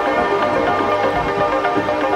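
Melodic progressive house music: a steady electronic beat under repeating synth notes.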